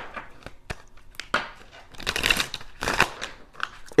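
A deck of tarot cards being shuffled and handled by hand: a run of soft clicks and card snaps, with two longer riffling rustles about two seconds in and just before three seconds.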